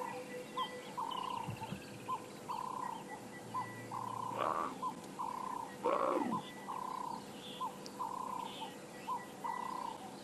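Leopard panting heavily in a steady rhythm, a longer breath then a short one about once a second, as she digests a large meal. About halfway through come two louder, rougher sounds, the second the loudest.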